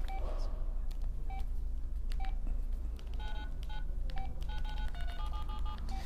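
Touch-tone keypad beeps, each a short two-note tone as when keys on a phone keypad are pressed. A few come spaced apart at first, then a quick run of many follows in the second half.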